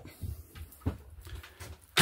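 Faint, irregular knocks and taps from footsteps and handling noise as someone moves through a motorhome's interior.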